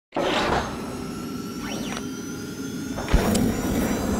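Logo intro sting: electronic whooshes with sweeping tones, ending in a sharp low hit about three seconds in.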